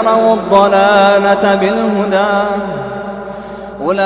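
A man reciting the Quran in a melodic chanted style, drawing out a long, ornamented vowel whose pitch wavers and slowly fades. Near the end his voice glides upward into the next phrase.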